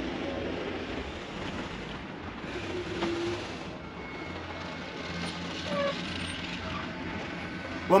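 Pickup truck with a front snow plow pulling away across a parking lot, its engine a low steady hum that fades as it goes, under a steady hiss.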